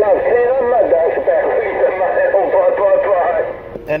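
A distant station's voice coming over an 11-metre Stryker SR-955HP transceiver's speaker, thin and band-limited with hiss underneath, the words hard to make out. The transmission drops out just before the end.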